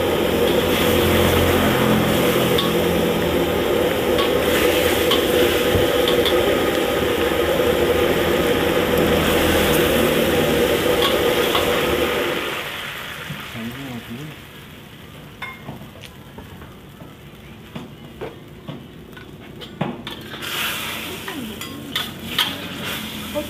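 Sauce sizzling and bubbling in a steel wok and stirred with a metal ladle, over a loud steady rushing noise that drops away about twelve seconds in. After that, quieter clinks and scrapes of the ladle and spatula against the wok.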